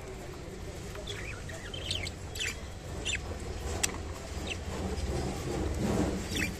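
Budgerigars chirping in short, sharp calls, scattered every half second to a second from about a second in, over a steady low hum.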